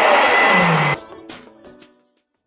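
Loud music mixed with the shouting of a crowd in a basketball gym, cutting off abruptly about a second in; after that only a few faint knocks.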